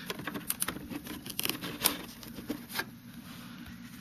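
Handling noise of fingers working a small sheet-metal bracket against the edge of a motorcycle helmet: scattered light clicks, taps and rubbing, with a few sharper ticks in the first two seconds.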